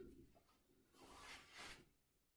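Near silence: room tone, with a faint, soft noise lasting about a second in the second half.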